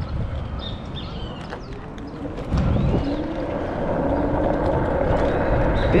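Wind rushing over the microphone, with road noise, while riding an electric mini motorbike. The rush steps up in loudness about two and a half seconds in.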